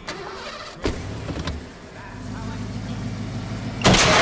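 A car engine starts with a sharp onset about a second in and runs steadily at a low hum. Just before the end comes a sudden loud crash as one car is driven into the side of another.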